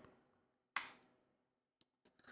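Near silence: room tone, with one brief faint noise a little under a second in and a tiny click near the end.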